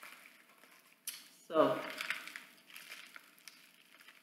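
Plastic packaging crinkling and rustling as it is handled and pulled open, with a brief falling vocal sound from the person about a second and a half in.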